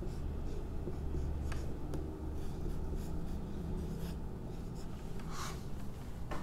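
Felt-tip marker strokes on a whiteboard as a chemical structure is drawn: a string of short squeaky scratches, the longest near the end, over a steady low hum.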